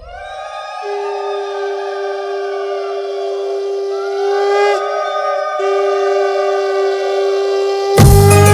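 Several conch shells blown together in long sustained notes, as at a Bengali puja ritual. One holds a steady tone from about a second in, with a short break midway, while others waver up and down in pitch above it.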